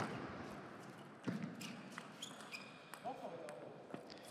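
Table tennis rally ending: a sharp ball strike right at the start that rings out in the hall, another hit about a second later, squeaks of shoes on the court floor, and a short shout from a player near the end.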